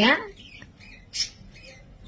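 A woman's voice: one short, loud word with a sliding pitch at the start, then a pause of low room noise broken by a brief hiss a little past a second in.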